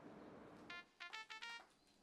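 Mobile phone alert tone: a short run of quick electronic notes, about four or five, starting a little under a second in over faint room tone. It signals a new voicemail.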